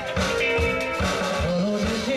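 Live band playing a rock song: a steady drum beat under guitar, with a male singer's voice over it.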